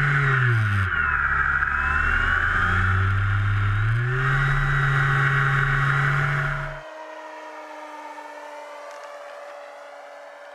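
Onboard sound of a Great Planes Escapade MX radio-controlled model airplane's power unit and propeller, loud and close: the pitch drops about a second in as power comes back, then climbs again around four seconds. Near seven seconds it gives way abruptly to a fainter, steady drone of the plane heard from a distance.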